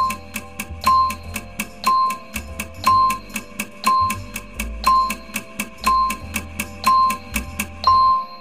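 Countdown timer music: a steady fast ticking, about four ticks a second, with a bright chime-like note struck once a second over a low repeating bass line.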